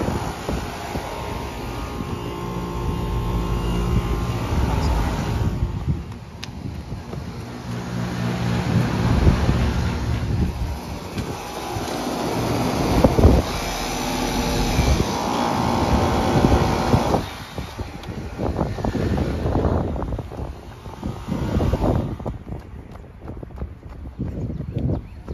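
Outdoor air-conditioner condenser units running, including a brand-new Concord unit: a steady low hum with fan noise, its strength changing several times as the microphone moves from unit to unit.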